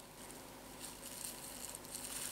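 Clear plastic wrapping crinkling faintly as it is pulled off and scrunched by gloved hands, getting busier about a second in.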